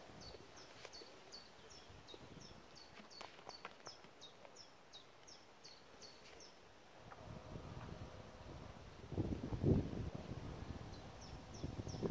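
A small bird calling a short, high chirp over and over, about three notes a second, pausing for a few seconds and starting again near the end. Bursts of low rumbling noise on the microphone come in about nine to ten seconds in and are the loudest part.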